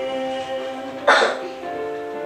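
Piano accompaniment playing held chords of a slow song, with a short, loud burst of breathy noise about a second in.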